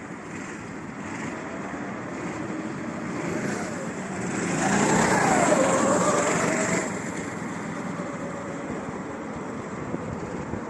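Several go-kart engines running as the karts lap the track. About four and a half seconds in, one kart comes nearer and its engine becomes the loudest sound, its pitch rising and then falling as it goes by, before it fades back into the hum of the others by about seven seconds.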